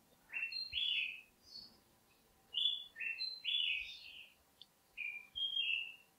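A small songbird chirping: quick high chirps that step and slide in pitch, in three short spells a second or so apart.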